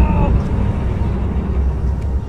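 Uneven low rumble of wind on the microphone. A man's drawn-out groan fades out just at the start.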